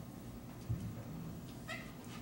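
Quiet room tone during a handheld microphone handover: a soft bump about two-thirds of a second in, then a short pitched squeak near the end.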